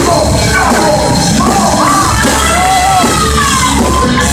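Metal band playing live and loud: electric guitar, bass and drums, with long notes sliding up and down in pitch over the band.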